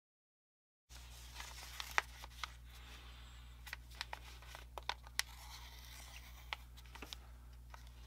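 A paper instruction sheet handled between fingers, crinkling with many small sharp clicks and crackles, starting about a second in over a faint steady low hum.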